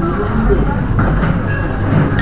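Steady low hum under indistinct background voices, with a light knock about a second in.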